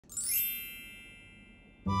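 A bright, chime-like ding sound effect. It comes in with a quick shimmer of high overtones, then rings and fades away over about a second and a half.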